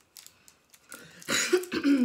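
A person coughing, a short harsh burst about a second and a half in, after a second of faint clicks.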